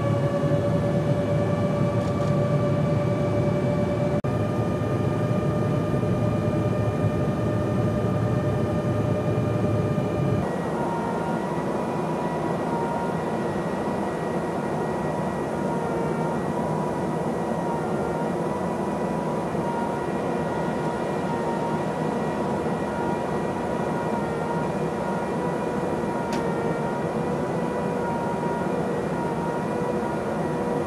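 Steady drone of jet engines and rushing air in flight, heard from aboard an aircraft, with a steady whine on top. About ten seconds in the sound cuts to a slightly quieter drone with less low rumble and a higher-pitched whine.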